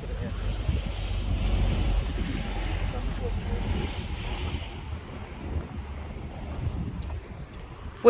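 Wind buffeting a phone's microphone, a rumbling rush that gusts strongest in the first few seconds and eases toward the end.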